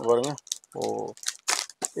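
Speech, followed in the second half by a few short crinkles and clicks of a clear plastic packet of bangles being handled.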